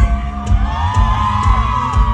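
Live band playing a pounding low beat while the concert crowd screams and whoops, many voices rising and falling over one another.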